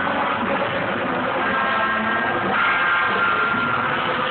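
Live rock band playing, with electric guitars and a drum kit, heard as a rough, dense recording in a large hall.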